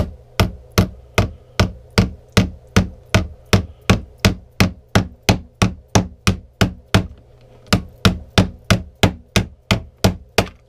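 A thick-walled aluminum water bottle used as a hammer, knocking a nail into a wooden board. It lands sharp, even blows at about three a second, with a short break about seven seconds in.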